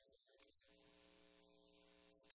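Near silence: a very faint steady hum sets in a little under a second in.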